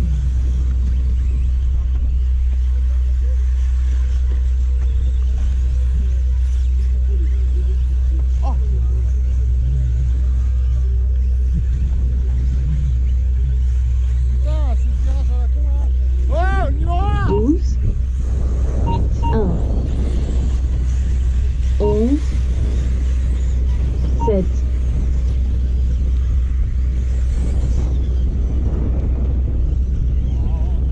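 Brushless electric RC off-road buggies racing, their motor whine sweeping up and down in quick arcs as they accelerate and brake, busiest in the middle of the stretch. Under it runs a steady low rumble.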